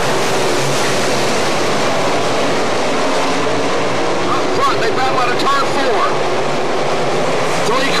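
A pack of dirt-track sportsman late-model race cars running at speed together, their V8 engines blending into one dense, steady noise with engine pitches rising and falling as cars pass through the turns.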